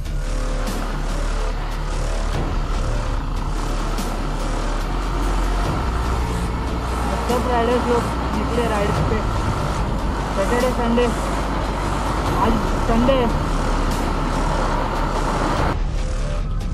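Motorcycle riding at speed: steady engine and wind noise on the microphone. Music and a voice play over it from about seven seconds in.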